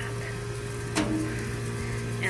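A steady low machine hum, with a single click about a second in.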